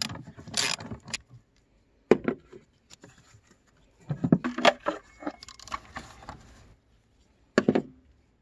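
A socket ratchet clicks as it loosens a hose clamp on the rubber air intake hose. Then come scraping and plastic knocks as the hose is worked off and the air filter housing lid is lifted, with a sharp knock about two seconds in, a spell of clatter from about four to seven seconds, and another knock near the end.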